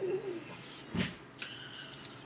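A man's voice making short wordless sounds: a brief low falling hum at the start, then a loud short burst about a second in.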